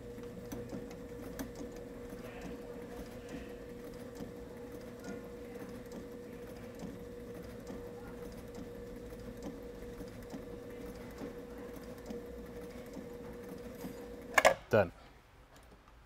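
Sailrite Ultrafeed LSZ-1 walking-foot sewing machine driven by the WorkerB Power Pack motor with the Monster II balance wheel, running at its slowest dial setting with the pedal fully down. It makes a steady motor hum while the needle sews about one stitch a second through four layers of Sunbrella marine fabric. It stops near the end.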